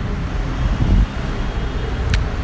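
Steady low rumble of road traffic, swelling briefly about a second in.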